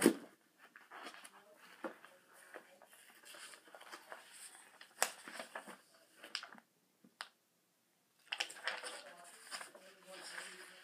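Paper and a workbook being handled: a sharp knock at the start, then scattered light taps and paper rustling, with a longer stretch of rustling near the end.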